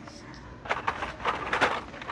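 Hot Wheels blister cards, card backs with plastic bubbles, rustling and clacking against each other and the cardboard box as they are shuffled and stacked. A quick run of clicks and scrapes starts about half a second in.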